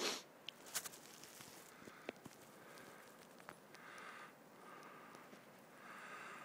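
Faint rustling and crunching of a dogsled moving over snow, with a few sharp clicks. A brief rush of noise comes at the very start, and soft hissing patches come and go.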